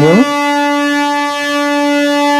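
Horn of a three-phase MEMU electric multiple unit sounding one long steady note as the train prepares to depart.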